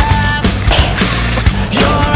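Loud background rock music with a steady drum beat and held guitar or synth notes.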